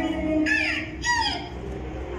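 Two short, swooping high-pitched calls about half a second apart, each rising and falling in pitch, over softer background music.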